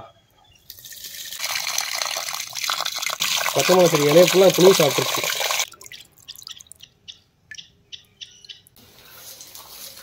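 Wash water poured off cauliflower florets in a clay pot onto a potted chilli plant: a steady splashing rush for about five seconds, then a thin trickle and scattered drips.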